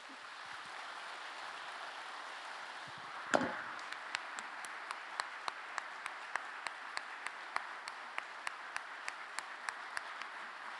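Theatre audience applauding, with one louder sudden sound about three seconds in. From about four seconds a single close clapper stands out over the applause with sharp, even claps, about three a second.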